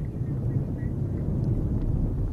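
Low, steady rumbling outdoor background noise, with no distinct events.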